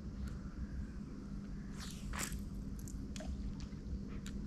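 An angler in chest waders moving in deep river water and working a spinning rod: faint water sloshing and rustling, a sharper swish about two seconds in, and a few light clicks.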